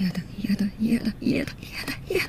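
Soft, breathy speech close to a whisper: a Japanese anime character's voice line.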